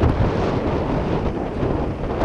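A steady rushing hiss of water spraying from a drop sprinkler nozzle on a Zimmatic center-pivot irrigation machine, with wind rumbling on the microphone.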